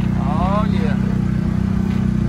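A vehicle engine running steadily at low speed, with a short rising vocal sound about half a second in.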